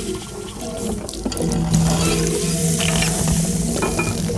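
Water sounds in an electroacoustic composition, a continuous wash of running water with small ticks, over a low steady tone that comes in after about a second and a half.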